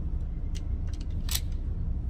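A few light metallic clicks from a compact pistol and its magazine being handled, the sharpest a little past the middle, over a steady low background rumble.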